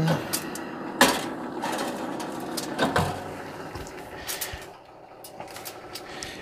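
A foil-lined metal pan being slid into a toaster oven and the oven's glass door being closed. There is a sharp metal clank about a second in, another knock around three seconds, and lighter scrapes and clicks later, over a low steady hum.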